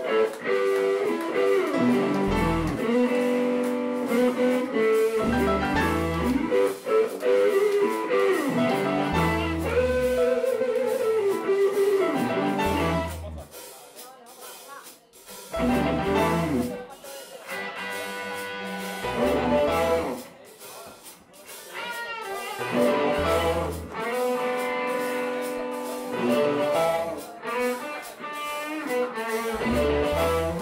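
Live blues band playing: electric guitars with bent notes over bass, keyboard and drums. The band drops out briefly twice, about 13 seconds in and again around 20 seconds.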